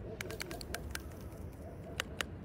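A quick run of small sharp clicks and pops as colored foam is squeezed out of a zip-top bag through the holes of a needle meat tenderizer pressed into it, with a bird calling softly in the background.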